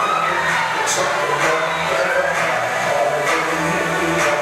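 Live R&B music played loud through a venue's PA: a band with bass, drums and cymbals keeps a steady groove while a male singer sings sliding, drawn-out notes into a handheld microphone.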